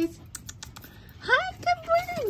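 Light, quick clicks of a red fox's claws scrabbling on the tile floor. About a second and a half in comes a high, drawn-out whining call that rises and then holds.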